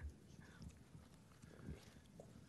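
Near silence: room tone with a few faint, soft knocks and taps.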